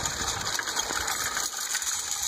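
A horse-drawn steel chain harrow dragging across pasture turf, its metal links clinking and scraping over the ground in a steady rattle.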